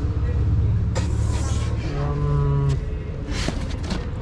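Street traffic: a motor vehicle's engine rumbling close by, with a brief hiss about a second in.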